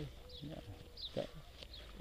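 Faint high bird chirps in open country, with a brief spoken word about a second in.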